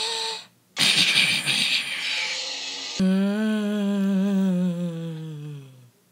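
Vocal sound effects: a hissing rush lasting about two seconds, then a low hum that slowly slides down in pitch over about three seconds and dies away.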